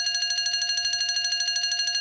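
Speedcore track in a drumless breakdown: a sustained high electronic synth tone made of several steady pitches, pulsing rapidly and evenly, with no kick drum or bass underneath.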